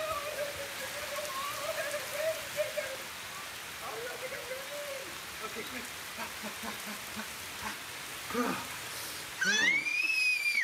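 Heavy rain falling steadily on pavement and lawn, with short stretches of voice and a high squeal near the end.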